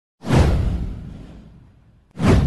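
A whoosh sound effect with a deep low boom. It comes in sharply about a quarter second in and fades away over about a second and a half.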